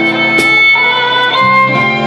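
Live instrumental band: a violin plays a melody of long held notes over strummed acoustic guitar and keyboard.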